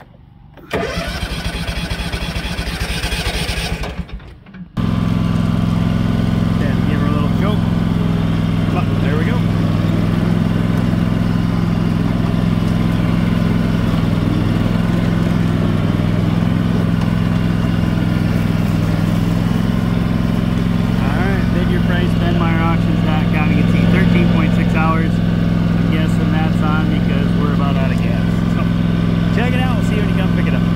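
John Deere X380 riding mower's V-twin engine being started: the electric starter cranks for about three and a half seconds, drops off briefly, then the engine catches and runs steadily, swelling slightly about two thirds of the way through.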